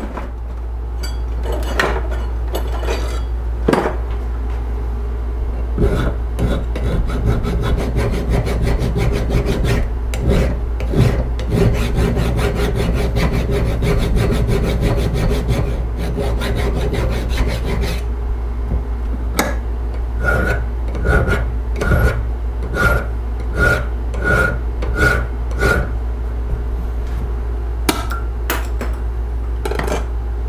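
Hand file scraping back and forth along a metal rod clamped in a bench vise: a run of quick strokes, then slower even strokes at about two a second. A steady low hum runs underneath.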